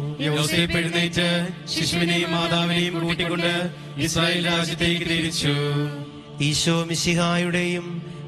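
A man's voice chanting a Malayalam novena prayer to St Joseph in a sing-song recitation tone, over a steady sustained musical drone.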